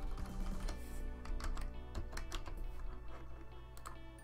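Computer keyboard typing: a scattered run of about ten separate key clicks, over steady background music.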